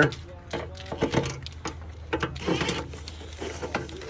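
Light clicks and scraping of a long screw being worked by hand through a hidden hanger bracket inside a metal gutter, with a scattered run of short knocks and a longer rasp a little past halfway.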